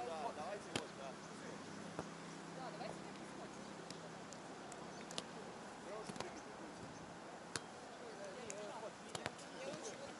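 Beach volleyball being struck during a drill: a string of sharp slaps of hands on the ball, every second or two, with faint distant voices behind.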